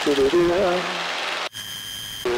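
A voice singing a wordless "do do do" tune over the headset intercom, with steady engine and wind noise of the light airplane's cabin behind it. The voice cuts off about a second and a half in.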